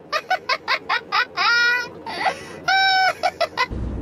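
A man's high-pitched, honking laugh: a quick run of short bursts, then two long held squeals.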